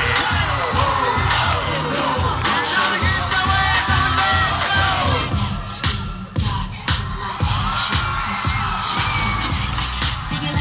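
Hip hop dance track with a steady bass beat, the audience cheering and screaming over it.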